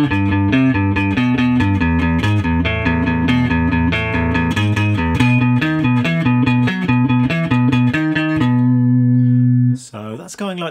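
Clean electric guitar, a Fender Jazzmaster through a Fender Princeton amp, picking a quick repeating single-note riff built on a B arpeggio low on the neck. The riff ends on a held note that rings for about a second and is cut off just before the end.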